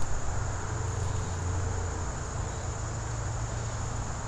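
A steady, even chorus of insects trilling high, with a continuous low rumble underneath.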